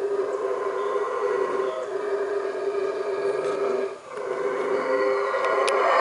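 Yucatán black howler monkeys roaring: a long, steady, droning call that breaks off briefly about four seconds in and then starts again.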